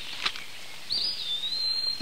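A bird chirping: a thin, high, wavering whistle about a second in, over a steady faint outdoor background hiss.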